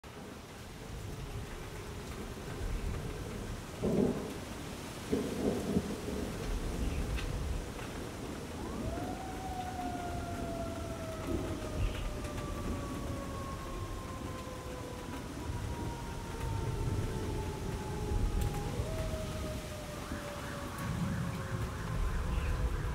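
Thunderstorm sound effect: steady rain and rumbling thunder, with louder claps about 4 and 5 to 6 seconds in. From about 9 seconds a long eerie tone rises briefly and then slides slowly down in pitch, and a second, shorter one follows near the end.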